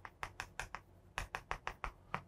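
Chalk clicking and tapping on a chalkboard while writing: an irregular run of about a dozen short, sharp clicks.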